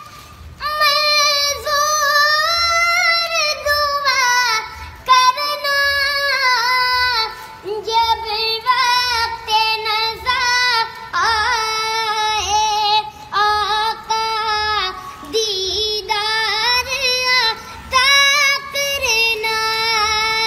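A young boy singing a song alone in a high, clear voice, with long held notes that waver and bend, broken by short pauses for breath between phrases.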